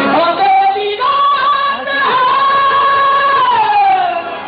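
Qawwali singer's voice in a live performance. About a second in it climbs to a long, high held note, which slides down in pitch near the end, with the accompanying music beneath.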